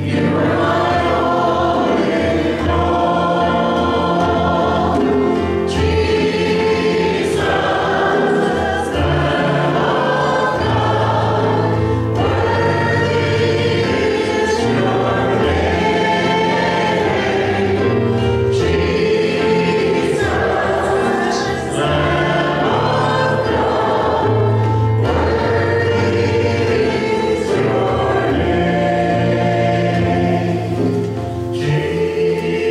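Worship team of several singers on microphones singing a praise song in parts, over sustained keyboard accompaniment.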